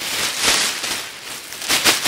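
Thin mylar emergency blanket (SOL, Survive Outdoors Longer) crinkling and rustling as it is shaken open and wrapped around the body, with a louder rustle about half a second in and another near the end.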